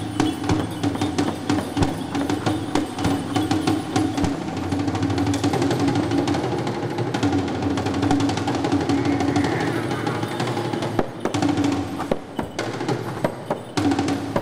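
Tuvan shaman's frame drum struck fast and irregularly with a beater, over a steady low droning chant. The drumbeats thin out midway and come back hard near the end.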